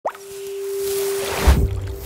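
Logo-reveal sound design: a quick rising pop at the very start, a held tone under a swelling whoosh, then a deep boom about one and a half seconds in, the loudest sound.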